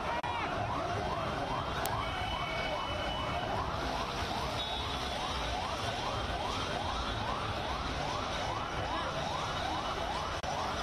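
Siren yelping in quick rising sweeps, about two to three a second, over a low rumble.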